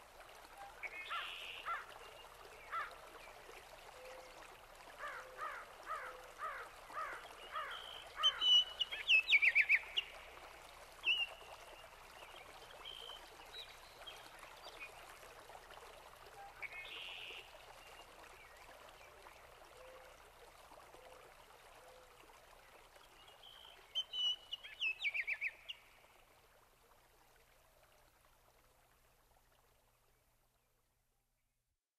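Birds calling and singing over a steady trickle of running water: a run of quick chirps, then bright descending trills about eight seconds in and again near the end. It all fades out over the last few seconds.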